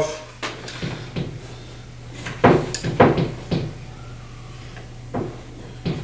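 A string of irregular clicks and knocks, the loudest about two and a half and three seconds in, as a rifle's forward grip is taken off and the rifle is handled and set down in a foam-lined hard case.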